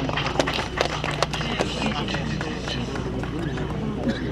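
Murmur of a crowd's voices with scattered sharp clicks, most of them in the first two seconds, over a steady low hum.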